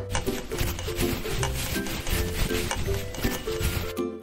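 Orange plastic spoon stirring cocoa powder into cereal porridge in a plastic bowl: a quick, continuous run of rasping scrapes against the bowl. Light background music plays underneath.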